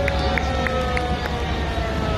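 Busy city street ambience: crowd voices over a steady low rumble, with a clear tone that slowly falls in pitch and a handful of short high chirps in the first second.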